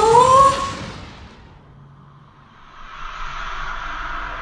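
A loud, high-pitched cry that rises in pitch and fades within about a second. About three seconds in, a steady rushing noise with a low rumble sets in.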